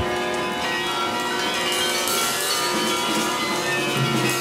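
Free-improvised music: many held notes sounding together in a dense, steady layer, with a bowed viola among them.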